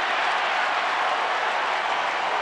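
Stadium crowd cheering and applauding steadily after a strikeout ends the inning.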